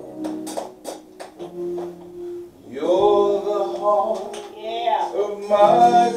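Church music: held instrumental chords with a few light taps, then a man's singing voice coming in loudly about three seconds in.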